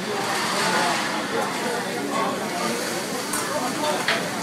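Indistinct chatter of diners over the steady hiss of vegetables frying on a hot teppanyaki griddle, with a faint click or two from the chef's spatula.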